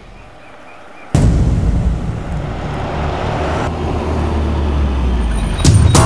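A car driving, a loud, steady low engine-and-road rumble that cuts in suddenly about a second in. A sharp hit comes near the end.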